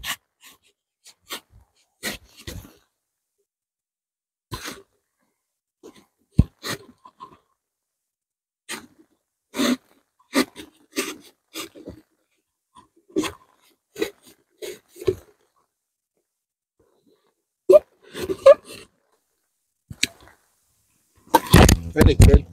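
Knife blade cutting through a cardboard Pringles tube: a long irregular series of short scraping and crunching strokes with brief pauses between them.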